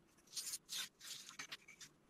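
Craft knife drawn along a steel ruler, cutting a sheet of foam: several short, faint scratchy strokes.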